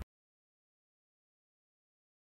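Silence: the sound track drops out completely, with no sound at all.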